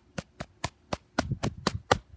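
A run of sharp taps, about four a second, a few of them with a duller thud underneath in the second half.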